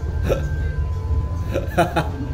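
A woman's stifled giggling behind her hand: two short, squeaky voice bursts, one near the start and a louder one near the end, over a steady low hum.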